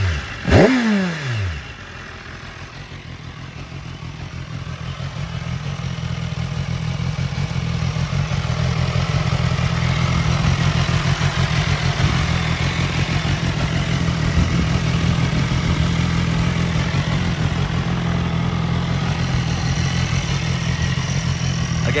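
2011 BMW S1000RR's inline-four engine running through a Jardine RT5 carbon exhaust: one rev blip about half a second in that falls quickly back, then a steady idle that grows louder over several seconds.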